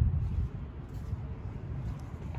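Low, uneven rumbling background noise, strongest in the deep bass, with no distinct events.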